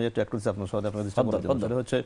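A man speaking in a steady, low-pitched voice, with short breaks between phrases.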